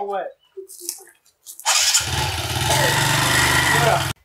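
A small TVS motorcycle's engine starts up a little under two seconds in and runs loudly as the bike pulls away.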